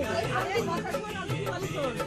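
Several women's voices chattering over background music with a steady bass line.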